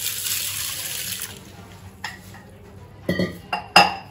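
Water poured from a stainless steel tumbler onto soaking rice and urad dal in a steel plate, a splashing pour that tapers off about a second and a half in. Near the end, a few sharp clinks of steel vessels.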